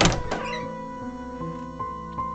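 A door-opening sound effect: a sudden noise right at the start that fades within about half a second. Soft background music with held notes continues under it.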